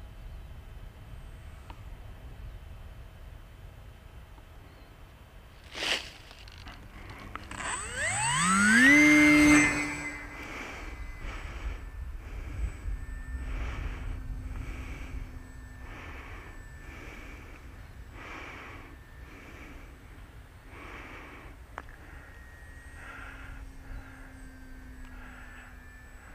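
The brushless electric motor and tractor propeller of a small RC foam plane throttling up in a loud rising whine that levels off, about eight seconds in, after a sharp click. Wind rumbles on the microphone throughout, and later the motor's faint steady hum sits under it.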